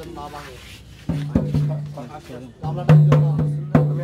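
Heavy drum strokes in two short groups starting about a second in, each stroke leaving a low ringing tone, over a voice.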